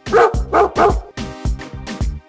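A dog barks three times in quick succession in the first second, over background music with a steady beat.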